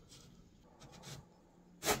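Faint, brief rubbing of a laminated molding strip against a particle-board bookcase panel as the strip is fitted over the panel's groove, about a second in.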